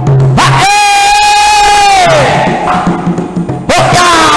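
A singer's long shouted call, swooping up onto one high held note for about a second and a half and falling away, over a patrol music ensemble of bamboo slit drums and drum. The drum beat stops under the call and picks up again after it, and a second call slides in and down near the end.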